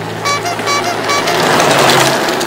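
Sound effect of four quick, high-pitched beeps, then a rising whoosh of something rushing past, over steady background music.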